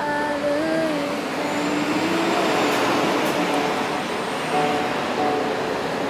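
A woman singing long held notes, with the noise of passing road traffic swelling up in the middle and half covering her voice.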